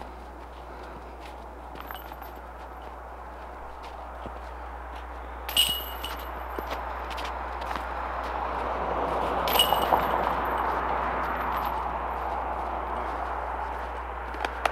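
Metal chains of a disc golf basket jingle briefly twice, about five and a half and nine and a half seconds in, as discs strike them, over a steady rustling background.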